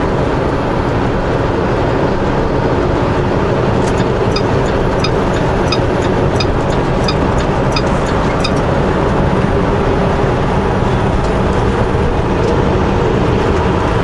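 Steady drone of a semi-truck's engine and road noise heard from inside the cab at highway speed. A run of light ticks, about two or three a second, comes in for a few seconds in the middle.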